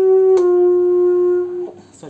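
Saxophone playing a held note, then stepping down a little to a second note held for about a second and a half, which ends shortly before speech resumes.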